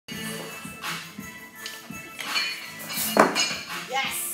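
Background music, with the metal clank and rattle of a loaded barbell and its plates as a snatch is pulled and caught overhead. The loudest clank comes about three seconds in.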